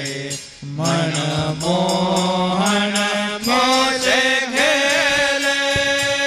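Devotional kirtan: men singing a Holi refrain in long drawn-out notes over a harmonium, with a brief drop about half a second in. Tabla strokes come in toward the end over held harmonium notes.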